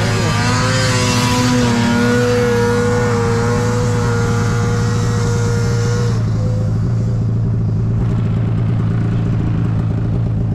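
Snowmobile engine running steadily through deep powder snow, with a second snowmobile passing close by in the first second or two, its pitch bending as it goes by. About six seconds in, the higher hiss fades and the sound turns duller.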